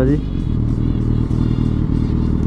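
Suzuki GSX-R 1000 inline-four motorcycle engine running steadily at low town speed, heard from the rider's seat; its note holds even, with no revving.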